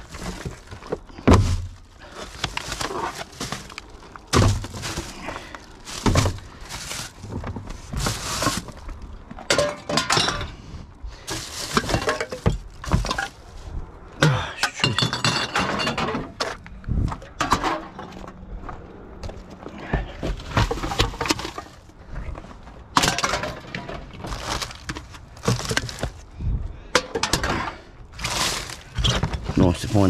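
Rubbish being rummaged through in a wheelie bin: plastic bags rustling, and aluminium cans and glass bottles knocking and clinking in many short, irregular clatters.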